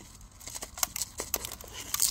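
A rubber-gloved hand pressing gritty potting mix into a pot around a succulent: faint, irregular small clicks and rustles of soil grains.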